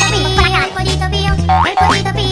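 Children's background music with a steady bass beat, and a cartoon boing sound effect rising in pitch about one and a half seconds in.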